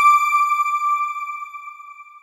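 A single chime struck once at the start, ringing at one clear pitch and slowly fading away: the sound sting of a closing logo card.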